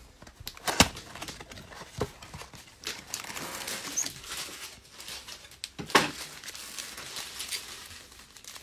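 Cardboard Optic trading-card blaster box being torn open and its foil-wrapped card packs pulled out: a few sharp cardboard snaps about a second in, at two seconds and near six seconds, with rustling and crinkling of cardboard and foil wrappers in between.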